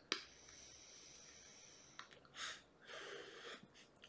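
Faint mouth-to-lung vape draw: a click, about two seconds of soft airflow hiss with a thin high whistle through the mouth-to-lung atomizer, a second click, then breathy puffs as the vapour is blown out.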